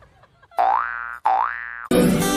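Comic sound effect: the same pitched tone, rising in pitch, played twice in quick succession, each about half a second long. Music starts right at the end.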